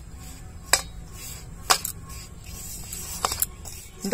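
Hand mixing dry roasted wheat flour in a stainless steel bowl: a soft rustle of the flour, with three sharp clicks against the bowl, about a second in, near the middle, and near the end.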